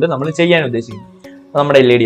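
A person's voice speaking or singing over background music, with short gaps between phrases.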